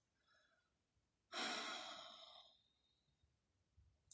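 A woman's sigh: one audible exhale about a second in, fading away over about a second.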